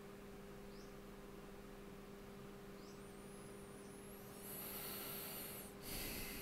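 Quiet room tone with a steady low electrical hum. About three seconds in a faint, wavering high whine rises, then a high hiss comes in and cuts off suddenly near the end.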